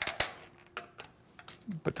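A few light clicks and taps of a chisel prying between the oar shaft and its plastic sleeve, to break the sleeve loose from its glue.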